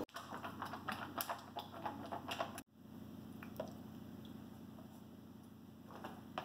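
A run of quick, irregular light clicks and taps for about two and a half seconds. It cuts off abruptly to quiet room tone with a faint steady hum and one small click.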